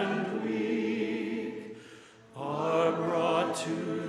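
A congregation singing a hymn together. The singing drops away briefly about halfway through, between lines, then resumes.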